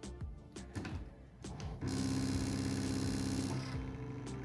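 Brother ScanNCut SDX225 cutting machine starting to cut vinyl: a few faint clicks, then about two seconds in its motors set up a steady whine as the carriage and mat move, easing off shortly before the end.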